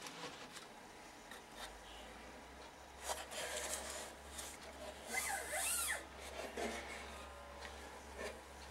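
Faint handling noise of a homemade cigar-box resonator guitar: hands rubbing and scraping on its wooden box and neck as it is turned over, with a few light clicks and louder spells of rubbing about three and five seconds in.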